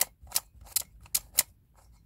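Hard plastic pieces of a handmade heart-shaped twisty puzzle clicking as its layers are turned by hand: five sharp clicks over about a second and a half, spaced roughly a third to half a second apart.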